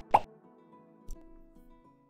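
Logo intro jingle ending: a short pop just after the start, then held musical tones that fade out.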